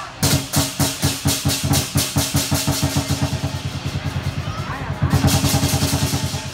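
Lion dance percussion: drum, cymbals and gong beating a driving rhythm that quickens from about three strikes a second to five or six a second, and grows louder near the end.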